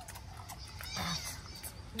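Lip smacking and chewing, small irregular clicks, while eating with the fingers, with one short breathy puff of air about a second in. An 'mm' hum begins right at the end.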